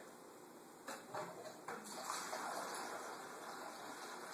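A few faint short sounds, then water starts running steadily through a siphon hose into a bucket about two seconds in, as the siphon drains the reef vase.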